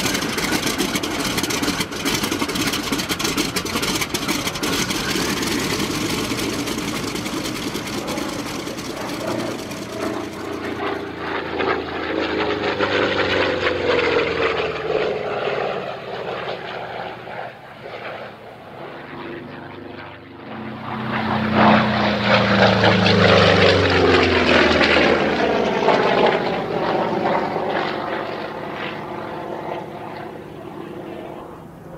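Propeller aircraft engine running, then two low passes with the pitch falling as it goes by; the second pass, about two-thirds of the way through, is the loudest.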